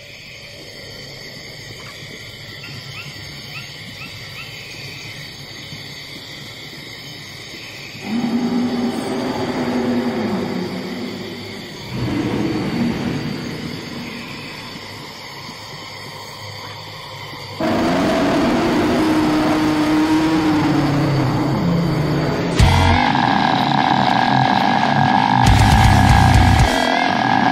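Dark ambient intro ahead of a slam death metal track. A faint steady wash is joined about eight seconds in by low, wavering moaning tones that come and go. A louder, denser layer enters from about eighteen seconds, then comes a heavy hit near twenty-three seconds and low booms near the end.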